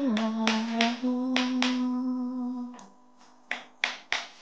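A person hums one long held note while snapping their fingers. The humming stops a little under three seconds in, and the snaps go on alone in a steady rhythm, about three a second.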